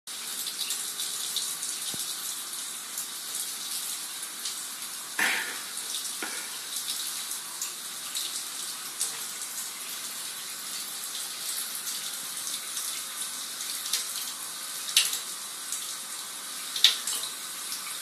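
A thin stream from a kitchen tap running steadily into a stainless-steel sink, with a few brief, sharper splashes as a cat dips its paw into the water to drink.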